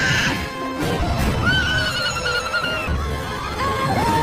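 A winged creature's long, wavering screech, lasting about a second and a half in the middle, over film score music and a steady low rumble.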